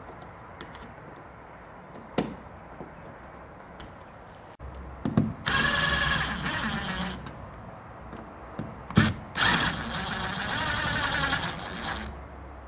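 DeWalt Atomic cordless drill/driver driving a light switch's mounting screws into the wall box. It runs in two bursts, a short one about halfway through and a longer one near the end.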